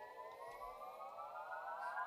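Electric guitar's held tone ringing out at the end of a song, gliding slowly upward in pitch like a siren.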